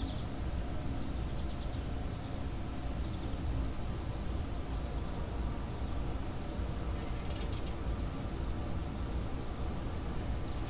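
Insects calling steadily: a high, even trill that stops about six seconds in, over a still higher, rapidly pulsing chirp that runs on throughout, with a low rumble underneath.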